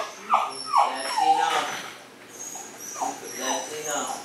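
A dog whimpering: a few short falling whines in the first second or so, then a couple more about three seconds in.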